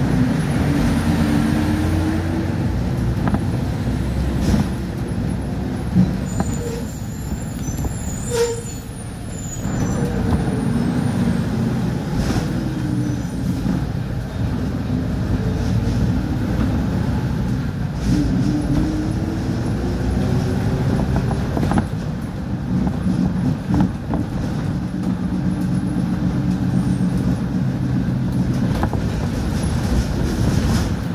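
Heard from inside a moving city bus: the diesel engine and road rumble run steadily, the engine pitch rising and falling several times as the bus speeds up and changes gear. A brief high squeal comes about eight seconds in as the bus slows.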